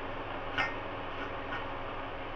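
A few light clicks of a metal utensil against a stainless-steel plate as spice-paste stuffing is scooped, the clearest about half a second in. A steady hiss runs underneath.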